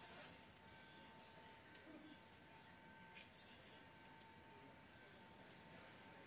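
Faint sound of a nine-car electric train approaching from far down the line: a thin steady whine with a few brief soft hissing swells.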